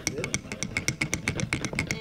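A spoon clinking rapidly against the inside of a mug while stirring Milo powder into hot milk: about ten quick, even clinks a second.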